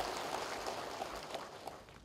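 A large seated audience applauding, the clapping slowly dying away toward the end.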